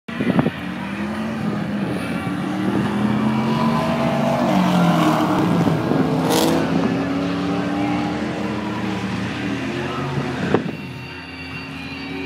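A 2005 Pontiac GTO with a 6.0 L LS2 V8 and a 1999 Camaro Z28 with a 5.7 L LS1 V8 drag racing side by side at full throttle. The engine pitch climbs and drops back as they shift up through the gears, then fades as the cars run away down the strip. A sharp knock is heard near the start and again just before the sound fades.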